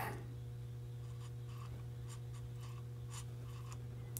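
Faint light scratching and ticking as a dial indicator with a hole adapter is handled and its contact tip worked back and forth, over a steady low hum.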